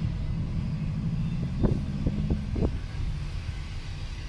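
Low rumble of a car driving with its windows open, heard from inside the cabin, with a steady low hum that stops about two and a half seconds in. Four short knocks come close together around the middle.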